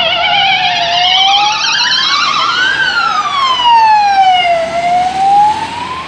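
Emergency-vehicle sirens on an ambulance and a MUG rapid-response vehicle on a priority run: a fast warble that fades out after about two seconds, overlapping a slow wail that rises, falls and rises again.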